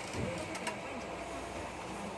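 Low running rumble inside the cabin of a JR 117-series electric train moving slowly, with a sharp click about two-thirds of a second in, under passengers' voices.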